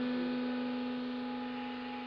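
A sustained low droning tone with fainter higher overtones, held steady and slowly fading.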